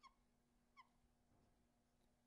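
Near silence, broken twice by a faint short squeak of a dry-erase marker drawing on a whiteboard, the squeaks less than a second apart.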